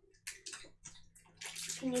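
Crackly rustling from a snack wrapper and chocolate-coated biscuits being handled. It comes in a few short bursts at first and grows denser in the second half.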